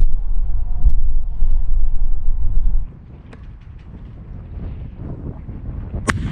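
Wind buffeting the microphone as a loud low rumble, which cuts off abruptly about three seconds in. The rest is much quieter, with faint hiss and a couple of small clicks.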